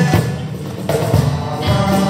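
Acoustic guitars strumming over a cajón beat in a short instrumental gap between sung lines of a Polish Christmas carol.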